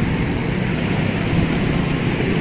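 Street traffic: a steady low engine rumble, with an old cargo truck passing close by.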